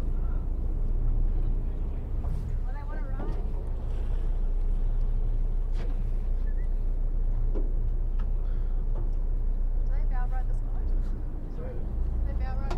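Steady low engine hum of a tour boat under way, with a haze of wind and water noise. Short snatches of background voices come about three seconds in and again near ten seconds.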